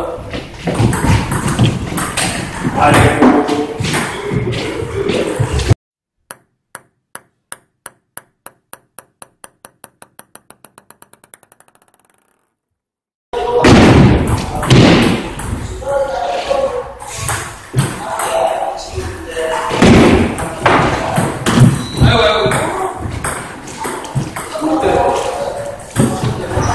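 Table-tennis play in a hall, ball clicks on bats and table over background voices. About six seconds in the room sound cuts out and a lone ping-pong ball bounces on a hard surface, the bounces coming faster and fainter until it comes to rest; the hall sound returns about thirteen seconds in.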